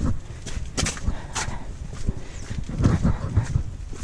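Footsteps on the stone walkway of a town wall: irregular knocks and scuffs, with a low rumble underneath.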